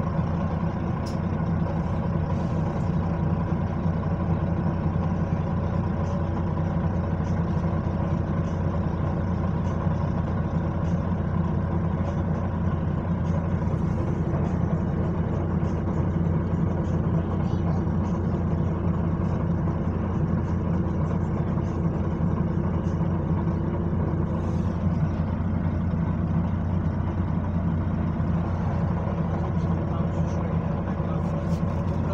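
Steady engine drone and road noise from inside a moving bus, with a steady whine running through it.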